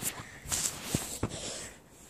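Rustling of bedding and handling noise as a bed is straightened, with two short knocks about a second in.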